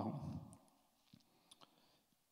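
A man's spoken word trailing off, then a quiet pause with a few faint clicks from a laptop being worked at the lectern, just past the middle.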